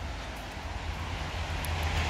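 Steady outdoor background rumble with a faint hiss, slowly growing a little louder.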